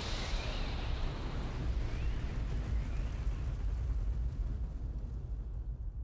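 A steady, low rumbling noise with no clear pitch, growing duller and fading away near the end.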